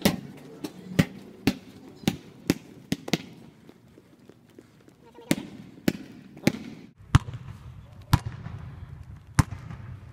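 A basketball dribbled on a hard floor, about two bounces a second at first, stopping for a couple of seconds, then slower, uneven bounces. A low steady hum comes in about seven seconds in.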